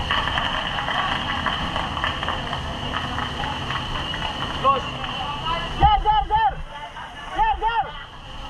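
Men shouting at a fire scene, loud strained calls in several bursts during the second half, over a steady rushing hiss.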